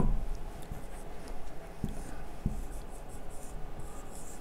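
Marker writing on a whiteboard: faint, irregular scratching of the tip across the board with a few small ticks as strokes begin and end.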